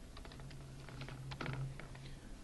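Computer keyboard being typed on: a quick, irregular run of about a dozen keystroke clicks.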